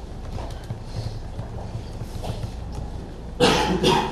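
Computer keyboard typing: irregular light key clicks. A short, louder rush of noise comes about three and a half seconds in.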